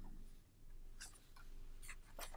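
Faint rustling of paper being handled, a few short soft scratches about a second in and again near the end, over a low steady room hum.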